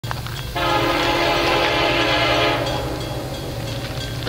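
Air horn of an approaching Kansas City Southern freight locomotive, sounded for the grade crossing: one long blast of a several-note chord, about two seconds long, starting about half a second in, over a low steady rumble.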